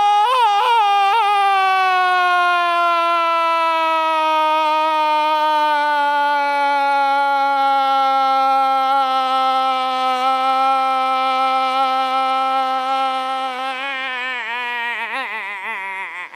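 A man's loud, drawn-out shout of "Nooo!", held on one breath for the whole time with its pitch sliding slowly down, then wavering and breaking up near the end.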